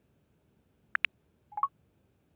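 iPhone VoiceOver sound cues as the camera button is activated and a new screen opens: two quick ticks about a second in, then a short two-note chime rising in pitch.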